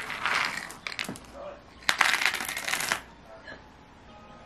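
Small dry loose pieces rattling in a wooden sensory bin as a toddler scoops and stirs them with a wooden scoop, with a louder pouring rattle about two seconds in that lasts about a second.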